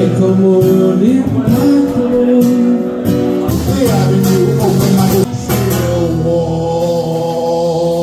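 Live acoustic guitar music with a man singing.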